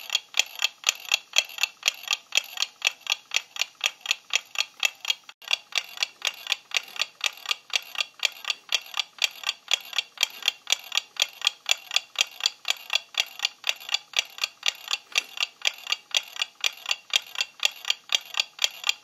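A clock ticking steadily and evenly, about five ticks a second.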